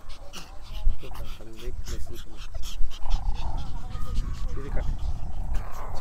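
A pen of small puppies making short, scattered noises, over a low rumble of wind on the microphone.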